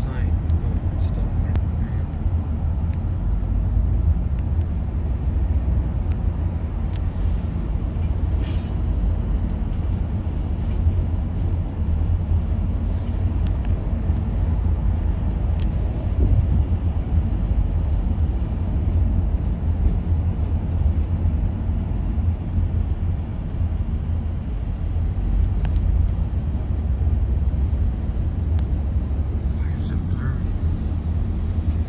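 Steady low road and engine rumble heard inside a car's cabin as it drives on a freeway, with a few faint clicks.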